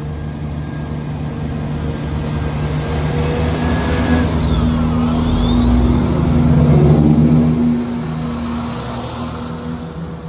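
East Midlands Railway Class 170 Turbostar diesel multiple unit pulling out of the platform past the listener. Its underfloor diesel engines run steadily, growing louder to a peak about seven seconds in, then easing as the last carriage goes by.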